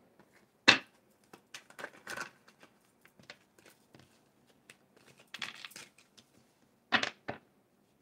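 Tarot cards being handled and dealt onto a table: scattered soft card rustles and slaps, with a sharper snap about a second in and two more close together near the end.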